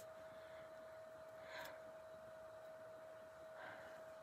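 Near silence: a faint steady tone runs throughout, with two faint soft rustles, about a second and a half in and near the end, from twine and tape being handled.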